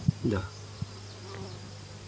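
A faint steady low buzz, after a woman's short 'da' near the start.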